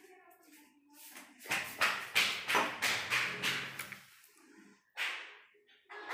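Handling noise on a kitchen counter: a run of quick scrapes and rustles for about two and a half seconds, then one more short scrape about five seconds in.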